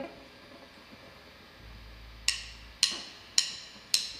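Drumsticks clicked together four times, evenly about half a second apart, counting the band in to the first song.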